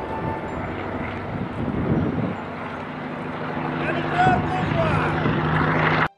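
Small electric RC flying wing's motor and propeller buzzing in flight as a steady tone, with some pitch movement near the end, then cut off abruptly.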